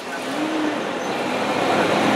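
City street traffic noise, a motor vehicle running past, slowly getting louder.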